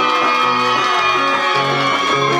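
Acoustic guitars playing an instrumental passage.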